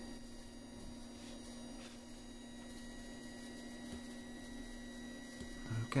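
A faint, steady low hum, like an electric motor or mains hum, in a quiet workshop.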